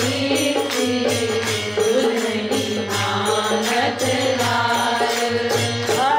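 Devotional bhajan: a woman singing a Hindi devotional song to harmonium accompaniment, over a steady beat of jingling hand percussion.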